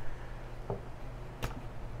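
A steady low hum with a faint tap just under a second in and one sharp click about three-quarters of the way through.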